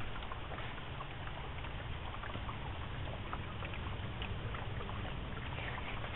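Steady low hum with a faint hiss from greenhouse machinery running, with a few faint ticks scattered through it.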